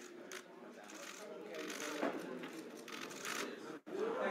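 Faint, indistinct chatter of a room full of people, with a few short sharp clicks scattered through it. The sound drops out for an instant near the end.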